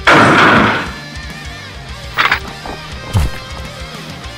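Added fight sound effects over background music: a loud crashing impact right at the start, then two short sharp hits about a second apart.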